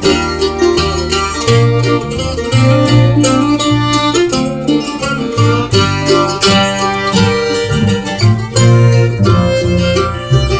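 Acoustic string band playing an instrumental break of a folk song: bowed fiddle over acoustic guitar and upright bass, with no singing.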